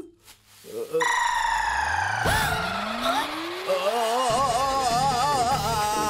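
Comic film background score and sound effects: a long, slowly falling tone and a rising glide, then a warbling, wavering tone that keeps going.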